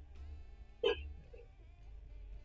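Quiet background music, with a single short vocal sound, like a gulp or hiccup, a little under a second in.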